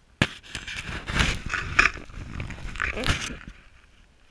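Handling noise from a camera being picked up off the snow and turned around: a sharp knock, then about three seconds of scraping, crackling rubs and knocks against the microphone.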